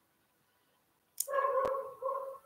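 A domestic animal's single drawn-out call at a steady pitch, starting a little past a second in, with a short click in the middle of it.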